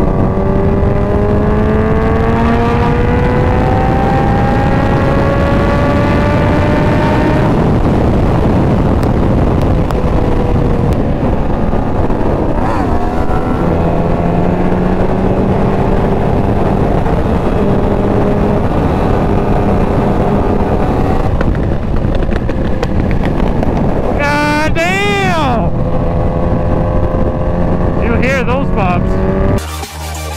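Kawasaki Ninja H2 supercharged inline-four running at freeway speed under a heavy rush of wind. The engine note climbs steadily over the first several seconds as the bike accelerates. A brief wavering tone that rises and falls comes about 25 seconds in.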